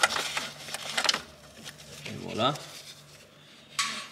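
Hand ratchet clicking rapidly for about a second as it turns the nut holding the diesel fuel filter's bracket, then a short voice sound midway and a sharp click near the end.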